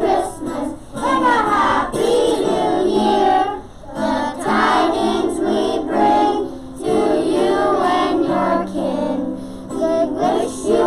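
A class of young children singing a song together in unison, in phrases broken by brief pauses for breath.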